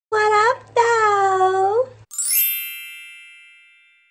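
A sparkly chime sound effect about halfway in: a quick upward run of bell-like tones that ring on and fade away over about two seconds. A drawn-out voice comes just before it.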